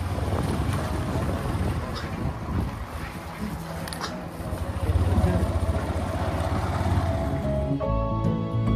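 Motorcycle riding noise: wind buffeting the microphone over the low rumble of the engine, with music faintly underneath.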